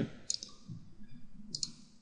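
Computer mouse button clicking twice, about a second and a quarter apart.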